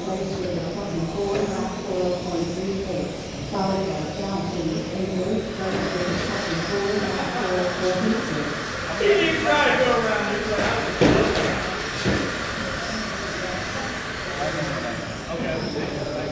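Indistinct voices of several people talking in a large hall, with a sharp knock about eleven seconds in.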